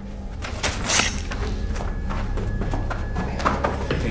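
A scuffle: a run of thuds and knocks as a person is grabbed and shoved against a wall, the loudest about a second in, over a low droning music bed.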